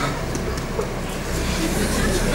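Steady background noise of a performance hall with a low hum, with no distinct event.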